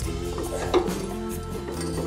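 Background music with steady held notes, and a light metallic clink about halfway through as metal parts of the mower's cutting unit are handled.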